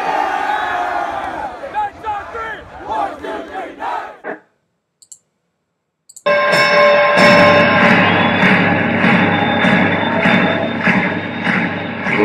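A group of boys shouting a team cheer together, their voices stopping about four seconds in. After a short silence, music starts about six seconds in and runs loud and steady.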